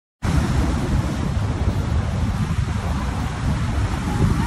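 Wind buffeting a phone's microphone: a loud, gusting low rumble with hiss.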